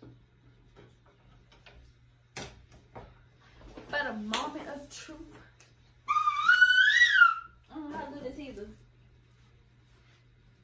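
Wordless vocal sounds from a person. The loudest is a high-pitched voice, sung or squealed, that rises and falls for about a second starting about six seconds in. A sharp click comes about two and a half seconds in.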